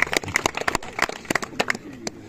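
A small group of people clapping their hands: sharp, uneven claps several a second that die away near the end.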